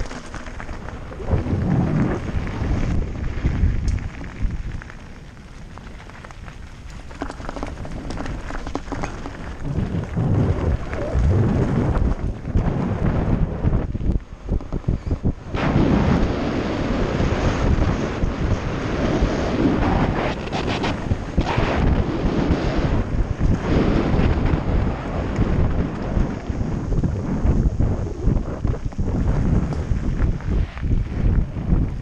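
Wind buffeting the microphone of a camera riding on a downhill mountain bike, mixed with tyre rumble and rattling over a concrete and gravel track. It dips in the first quarter and grows louder and rougher from about halfway through.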